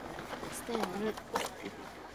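Quiet, brief speech: a person's voice speaking softly in short snatches around the middle.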